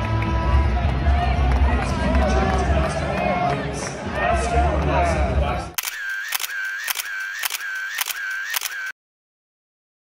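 Arena crowd chatter with music, cut off abruptly about six seconds in by a rapid run of camera shutter clicks, about two a second, which stop suddenly about three seconds later.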